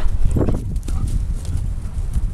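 Dogs playing at close range, with one short dog vocalization about half a second in, over wind rumbling on the microphone.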